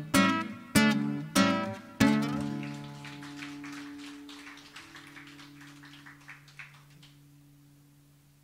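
Nylon-string acoustic guitar ending a song: four strummed chords in the first two seconds, then a last chord left ringing and slowly dying away, with a few soft plucked notes near the middle.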